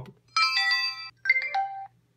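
PenFriend 2 talking label pen sounding two short electronic chimes, each a few steady tones together, the second ending on a lower note: the pen's prompt tones at a blank voice label.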